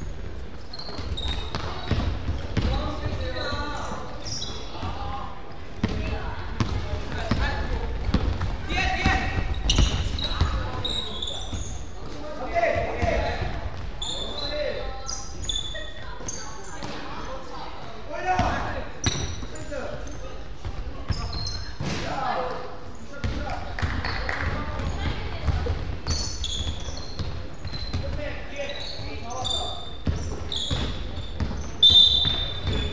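Basketball game in a reverberant gymnasium: a basketball bouncing on a hardwood court in irregular knocks, under players' and spectators' shouts and chatter.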